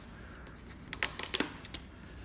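Tape seal being pulled off a cardboard product box and its lid opened: a quick run of sharp clicks and crackles about a second in, lasting under a second.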